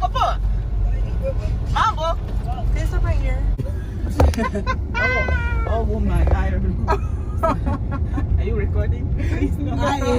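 Steady low road and engine rumble inside a moving car's cabin, with voices talking now and then over it.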